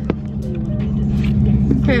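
Chevrolet Camaro engine running at a steady speed, heard from inside the car's cabin, with a short click right at the start.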